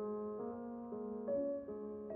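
Background piano music, a slow melody of held notes with a new note about every half second.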